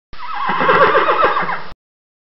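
A horse whinnying: one long whinny whose pitch quavers rapidly and falls in steps, starting and stopping abruptly.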